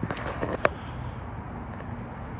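Faint outdoor background noise with a few light clicks, the sharpest about two-thirds of a second in.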